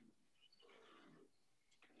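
Near silence: faint room tone with one brief, faint sound in the middle.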